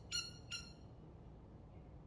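Squeaky dog toy squeezed twice in quick succession, two short high squeaks in the first half-second, then only a faint steady room hum.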